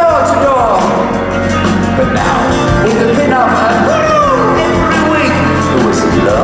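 Live progressive rock band playing, with a male lead voice singing gliding phrases over sustained bass and keyboards.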